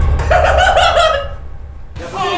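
A man laughing, stifled behind his hand, over a deep bass sound; both die away after about a second.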